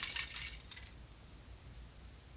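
TEAC A-4300 reel-to-reel tape deck with its reel spinning, a rapid fine clicking that dies away within the first second as the reel slows. The tape has just parted at an old splice that broke.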